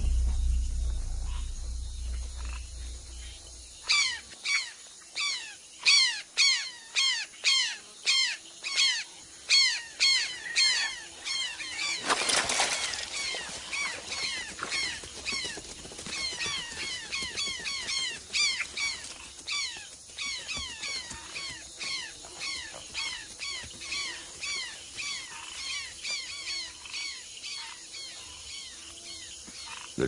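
A bird calling a long series of sharp whistles that sweep down in pitch, about two a second, loud at first and fading, over a steady high insect hum. A low rumble comes before the calls start, and a brief rushing rustle comes about twelve seconds in.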